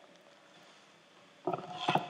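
Quiet room tone, then a short murmur of a voice about one and a half seconds in and a sharp click near the end.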